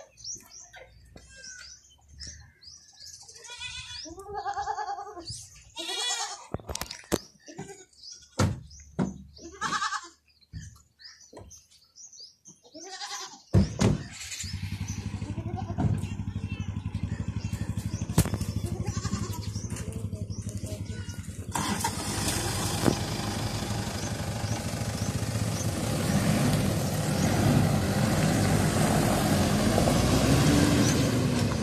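A goat bleating a few times, with scattered sharp knocks like car doors shutting. Then, about halfway through, a Toyota Land Cruiser Prado SUV's engine starts and keeps running steadily as the vehicle pulls away, its pitch rising and falling near the end.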